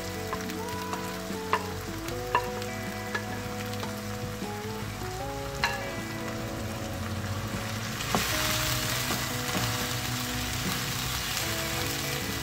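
Chopped tomatoes and onions sizzling in hot oil in a karahi, with a few light knocks. About eight seconds in, the sizzle grows louder and brighter as a wooden spatula starts stirring. Soft background music with sustained notes runs underneath.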